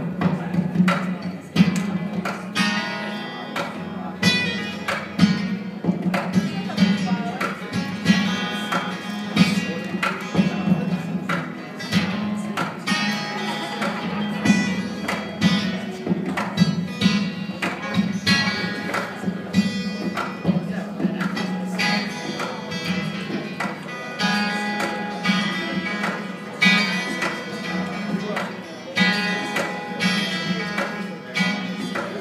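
Acoustic guitar played live with quick plucked notes that ring on, heard through a phone microphone from the back of a room.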